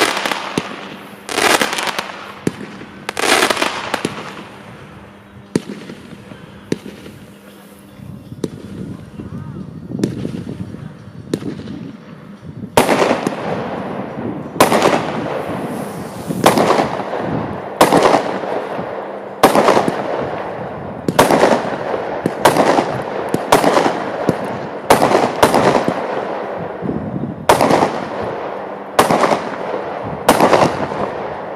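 Weco Proton fireworks battery firing: two loud bangs in the first few seconds, a quieter spell of small pops, then from about halfway a steady run of loud bursts, roughly one a second.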